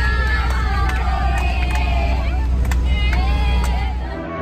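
Steady low rumble of a bus engine heard from inside the passenger cabin, with many passengers' voices chattering over it and a few brief sharp clicks.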